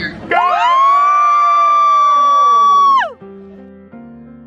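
A handheld air horn blown in one long, loud blast of about three seconds. Its pitch jumps up at the start, holds steady, then sags and cuts off.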